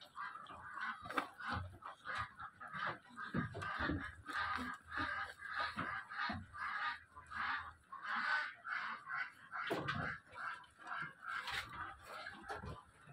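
Many short, overlapping honking calls from farm birds, a few every second, with a few dull knocks in between.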